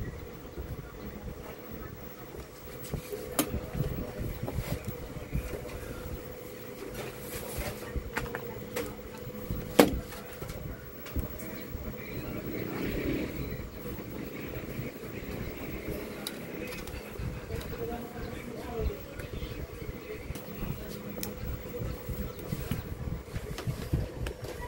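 Hand soldering on a circuit board: a few sharp clicks as metal tweezers and a soldering iron touch the component and board, over a steady low hum and rumble of background noise.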